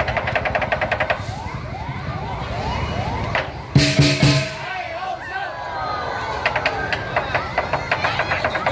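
Lion dance percussion, drum and cymbals, playing in quick runs of strokes, with a loud crash about four seconds in. Crowd voices and short, repeated rising tones run under it.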